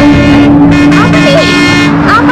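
Film sound mix of a bus approaching: vehicle noise under a long steady droning tone, with short wavering, voice-like sounds about a second in.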